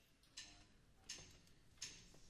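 A steady count-in before the band starts: three sharp clicks about 0.7 s apart, most likely sticks tapped together to set the tempo, against a near-silent hall.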